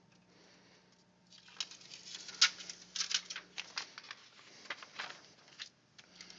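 Protective liner being peeled off an AS10 sheet: a faint run of irregular crackles and ticks that begins about a second in.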